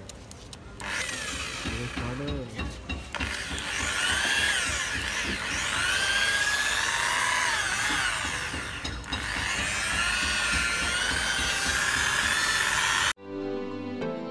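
Electric rotary polisher with a wool buffing pad running on a motorcycle's painted steel fuel tank, buffing in cutting compound. Its motor whine wavers in pitch as the pad is pressed and moved. It cuts off suddenly about a second before the end, giving way to music.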